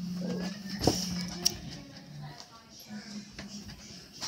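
Audio of a clip compilation played through a computer's speakers: music with faint voices, a sharp knock about a second in, and quieter in the second half.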